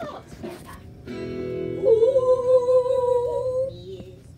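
Cartoon soundtrack playing from a television: a steady guitar chord comes in about a second in, then a single vocal note is held for about two seconds.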